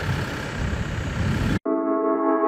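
A Ford Everest SUV's engine idling, cut off abruptly about one and a half seconds in by background music of sustained synthesizer chords.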